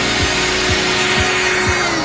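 Progressive house track: a four-on-the-floor kick drum about twice a second under a held synth note, with a white-noise sweep swelling up over it and easing off near the end as the build-up closes.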